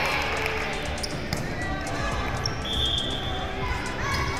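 Live sound of an indoor volleyball rally: the ball being struck and players moving on a hardwood court, with a brief high squeak a little past halfway.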